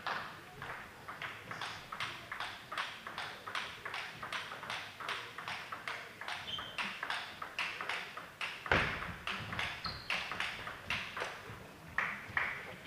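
Table tennis balls clicking off bats and tables in fast rallies, a quick steady run of about three hits a second. There is one louder thump about two-thirds of the way through.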